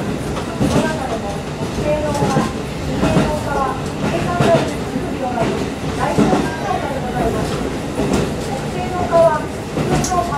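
Diesel railcar running along the track, heard from inside the car: a steady engine and wheel rumble with occasional clacks over rail joints.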